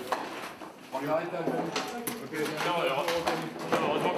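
A man speaking in French at a moderate level, with a few short, sharp clicks and knocks of handled equipment among the words.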